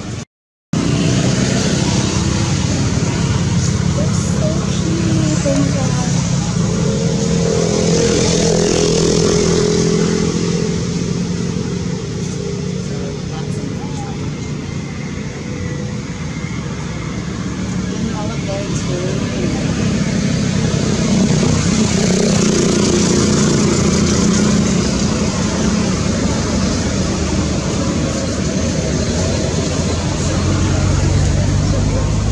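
Voices over a steady, low motor-like hum. The sound cuts out for a moment just after the start.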